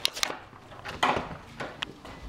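A few sharp wooden knocks: a skateboard deck clacking on a concrete garage floor as the rider steps off it. Two come close together at the start, one about a second in and a lighter one near the end.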